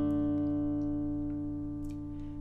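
Acoustic guitar's fingerpicked D over F-sharp chord ringing on, its notes sustaining and slowly fading.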